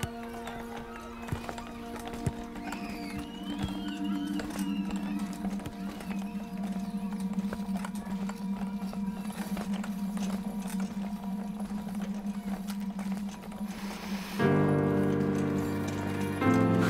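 Film-score music from an animated short, holding a soft sustained chord, with a few faint high wavering sounds and light clicks in the first few seconds. About a second and a half before the end it swells suddenly into a louder, fuller chord.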